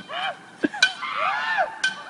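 Distant boys' drawn-out yells and wails, with sharp metallic clinks of a metal pole striking the ground: two clinks under a second in and another near the end.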